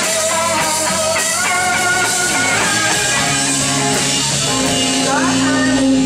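Live rock band playing an instrumental passage: an electric guitar lead with bent, wavering notes over the band, and a run of quick upward slides about five seconds in.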